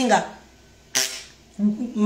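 A woman's singing voice ends a held phrase, a single sharp click sounds about a second in, and her voice comes back in near the end.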